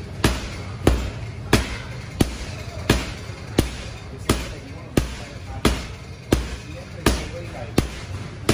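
Gloved punches landing on a vinyl heavy punching bag: a hard smack about every two-thirds of a second, around a dozen in an even, steady rhythm.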